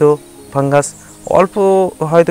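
A man speaking in short bursts with pauses between, the narration going on.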